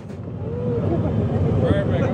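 Radiator Springs Racers ride vehicle moving through the show building: a steady low rumble that grows louder over the first second, with voices over it.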